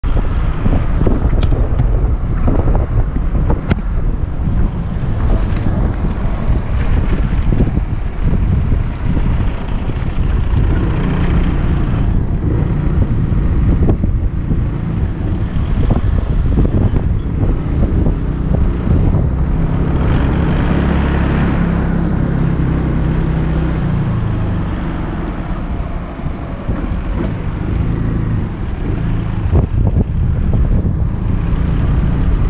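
Kymco Xciting 250 maxi-scooter's single-cylinder four-stroke engine running as it is ridden at low speed, heard from the rider's helmet camera with heavy wind buffeting on the microphone. The engine's steady hum stands out most clearly about two-thirds of the way through.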